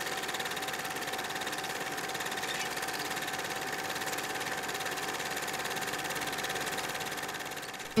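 Film projector running: a steady mechanical whir with a fast, even clatter, dying away just before the end.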